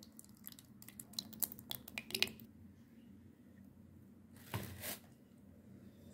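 Thick yogurt poured into an earthenware bowl of spices: faint soft, wet plops and small clicks during the first couple of seconds, then a brief rustle about four and a half seconds in.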